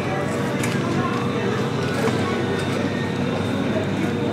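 Metal shopping cart rolling across a supermarket floor, a steady rattling and rolling noise from its wheels and wire basket.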